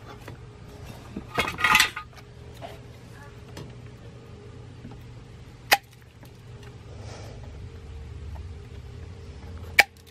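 Metal hand tools clinking while a harness wire is cut and worked with wire cutters: a short rattle of clinks about a second and a half in, then a single sharp snip near the middle and another near the end. A steady low hum runs underneath.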